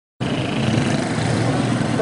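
A steady loud rumble and hiss that starts abruptly a moment in and holds level throughout.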